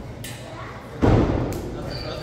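A wrestler's body hitting the ring mat: one heavy thud about a second in, dying away over about half a second.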